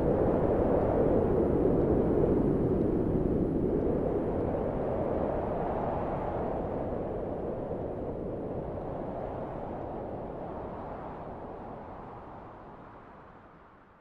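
The soundtrack's closing noise: a dense, low, even wash of sound that swells slowly a few times and fades out gradually to silence at the very end.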